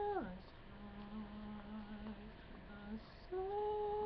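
A man's voice singing wordless notes, humming the melody. A held note drops sharply right at the start, a lower note is hummed for about a second and a half, and a higher held note begins about three seconds in.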